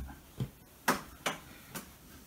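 Four light, sharp clicks, about half a second apart, from metal circular knitting needles being handled, the loudest near the middle.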